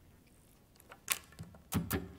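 A few sharp clicks and knocks from handling the electric guitar and its tone controls while switching to a clean tone. A moment of quiet, then four short clicks over the second second, the first the loudest.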